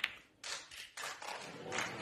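Sharp clicks of the cue and snooker balls as the final black is potted, then audience applause starting about half a second in and building.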